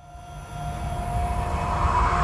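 Cinematic riser sound effect opening an animated logo sting: a low rumble that swells steadily louder, with a few held tones above it.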